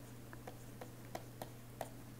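A stylus on a writing tablet as handwriting is entered: about half a dozen light clicks, a few tenths of a second apart, over a steady low hum.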